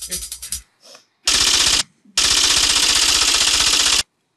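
Rapid typewriter-style clicking sound effect for on-screen caption text, in two runs: a short one about a second in, then a longer one from about two seconds in that stops abruptly.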